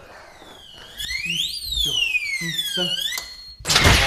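Electronic alarm wailing, its pitch sweeping up, then down, then up again before it cuts off. It is the alarm that goes off when a wrong code is entered on the password safe. Near the end comes a sudden loud burst of noise and music.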